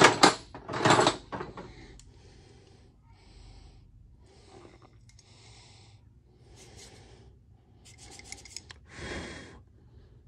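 Loose metal hardware clattering as a hand rummages through a galvanized steel bin of chains and small parts, loud for the first second or so, then quieter scraping and rustling as pieces such as an old steel C-clamp are picked up and handled. A short rattling scrape comes a little before the end.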